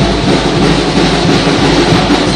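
Brass band with drums playing loudly; the sound is a dense, smeared wash in which the tune is hard to pick out.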